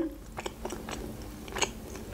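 Close-miked chewing of a mouthful of sushi roll: a few faint, scattered wet mouth clicks and smacks, one a little louder about one and a half seconds in.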